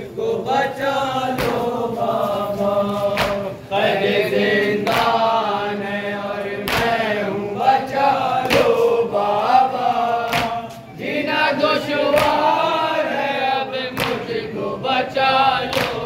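A crowd of men chanting a Shia noha (mourning lament) in chorus. Sharp slaps land every second or two in time with the chant, typical of matam, the rhythmic chest-beating that accompanies a noha.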